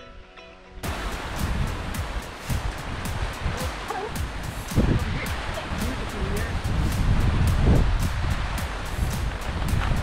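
Wind buffeting the microphone of a handheld camera, a loud rushing noise with a gusty low rumble that starts abruptly about a second in. Rapid clicks and knocks run through it as the camera is carried across a wooden footbridge.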